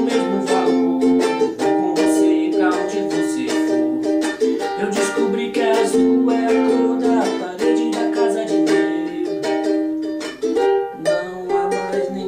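Ukulele strummed in a steady rhythm through a Gm, F and Eb major-seventh chord progression, with a man singing along in Portuguese.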